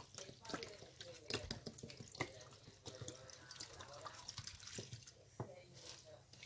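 Water poured from a plastic bottle, splashing and trickling faintly into a glass bowl of chopped escarole leaves, with small wet ticks and crackles throughout.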